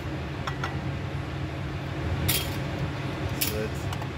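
A glass mason jar is set on a glass-topped kitchen scale and its metal lid put down on a steel counter: a few light clinks and knocks, the sharpest about two seconds in and another near the end, over a steady low hum.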